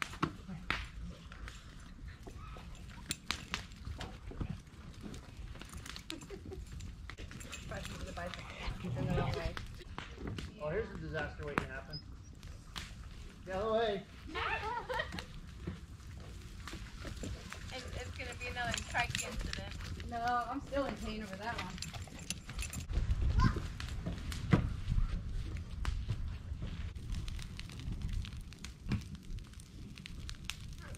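Indistinct voices in short stretches through the middle, over a steady low rumble and scattered sharp clicks and knocks.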